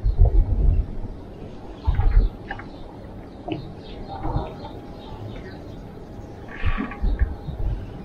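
Gusts of wind buffeting the microphone in low rumbling surges: one at the start, one about two seconds in and another near the end. Faint short chirps and ticks come between them.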